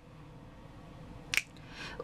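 A single finger snap about two-thirds of the way in, against faint room noise.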